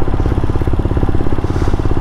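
Royal Enfield Himalayan's single-cylinder four-stroke engine running at a steady cruise while riding, heard from on the bike as a rapid, even pulsing.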